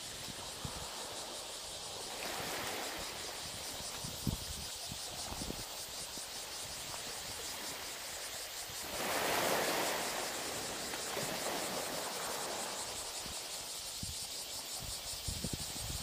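Steady wash of small waves on a coral-rubble shore. The surf swells louder for a second or two about nine seconds in, and a few low bumps hit the microphone.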